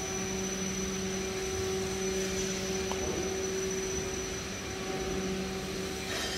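Steady mechanical hum: a machine's constant drone with several unchanging tones over a whooshing noise.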